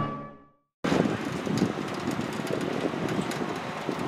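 Orchestral theme music fades out, and after a brief silence a steady outdoor rushing noise takes over.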